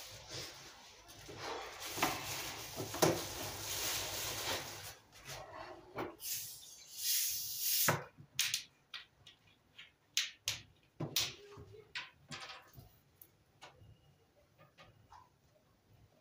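Electric sandwich toaster hissing and sizzling as a toast cooks, with a louder hiss near the middle. After that come scattered sharp crackles and ticks that thin out toward the end.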